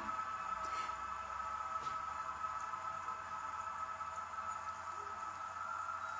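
Soft background music of steady, held notes with no beat, playing quietly under a pause in speech.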